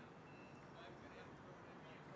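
Faint street ambience with a thin, high, steady beep about a quarter second in from a truck's reversing alarm, and faint distant voices.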